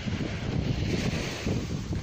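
Wind buffeting the microphone with a low, fluttering rumble, over the wash of small sea waves lapping a sandy shore.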